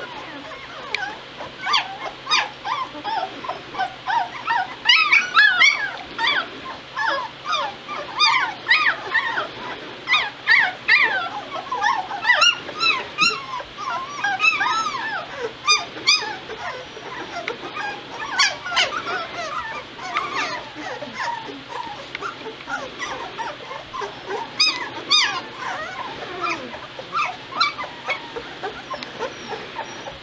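A litter of two-week-old White Shepherd puppies whimpering and squeaking, many short high calls overlapping almost without pause.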